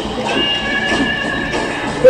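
Live psychedelic rock band performance, with a single high note held for about a second and a half over the band.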